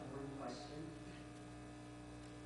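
Steady electrical mains hum on the sound system, with faint, distant speech in the first half-second.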